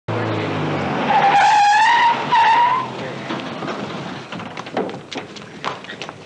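A dune buggy's engine running, then its tyres squealing in two long skids as it brakes hard, followed by scattered knocks and clatter.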